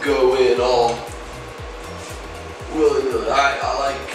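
Background music: a song with a sung vocal phrase near the start and another near the end, over a steady low beat.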